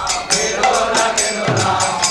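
Devotional bhajan: a voice chanting a melody over sharp, bright percussion strikes about four times a second, with a low drum note about one and a half seconds in.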